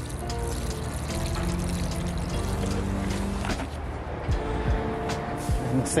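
Water pouring from a watering can onto the soil of a potted rose, under background music with steady held tones.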